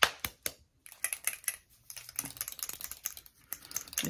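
A bottle of gel nail polish being shaken by hand: a quick run of sharp clicks, about five a second, in the first half second, then fainter, denser clicking.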